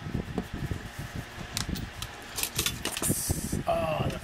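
Metal clamp-lid tobacco tin being unlatched and opened: a few sharp metallic clicks from the wire bail clasp and lid, then a short hiss about three seconds in as the lid comes off.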